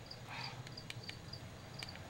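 Faint snipping of dissecting scissors cutting along a spiny dogfish's intestine, a few sharp clicks about a second apart. Under it runs a repeated high-pitched chirping and a low steady hum.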